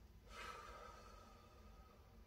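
Near silence with a faint, airy breath, likely through the nose, starting a moment in and fading out during a pause in a breathing exercise.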